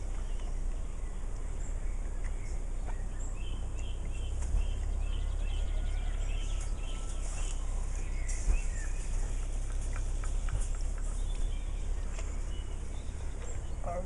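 Outdoor ambience: a steady low wind rumble on the microphone, with birds chirping in short repeated calls from about three to eight seconds in, and a few light clicks and knocks.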